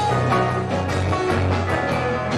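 Live rock band playing an instrumental passage: electric guitars over a drum kit and keyboard, with a steady drum beat.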